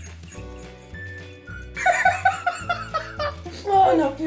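Background music with a steady, repeating bass line; about two seconds in, a man breaks into loud laughter over it.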